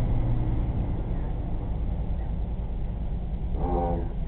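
A low, steady rumble of a truck driving past outside, muffled through a glass door.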